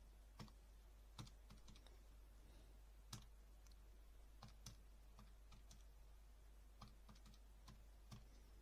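Faint, irregular clicking of calculator keys being pressed, a dozen or so presses at uneven spacing, some in quick runs, as a multi-step sum is keyed in.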